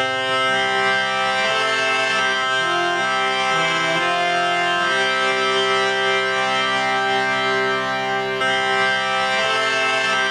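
Hand-pumped harmonium playing a melody of held reed notes, several notes sounding together, the tune moving every second or so over sustained lower notes.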